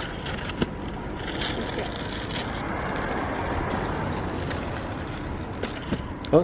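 A vehicle passing on the street, its noise swelling gradually to a peak about halfway through and then easing off. A single sharp click comes under a second in.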